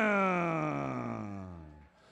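A ring announcer's voice holding out the end of a fighter's surname in one long call, its pitch falling steadily until it fades out near the end.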